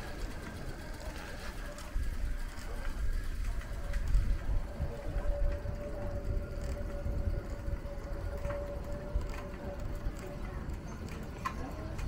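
Night-time street ambience heard while walking: a low rumble throughout, with a steady mid-pitched hum that comes in about two seconds in and fades out near the end.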